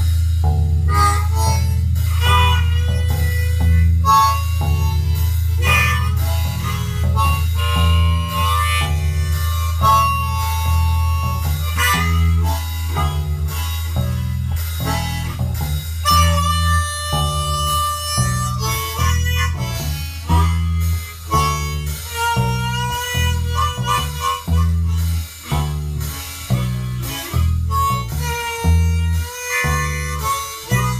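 Blues band instrumental break: a harmonica solo with bent, held notes over a steady bass line and drums.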